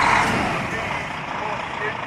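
Tipper lorry's diesel engine running close by: a rush of noise that is loudest at the start and eases off over the next second or so.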